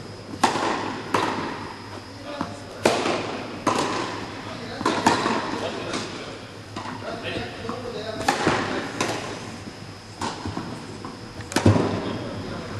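Tennis rally on an indoor court: rackets striking the ball and the ball bouncing, sharp impacts roughly every one to one and a half seconds that echo in the hall. The loudest hit comes near the end.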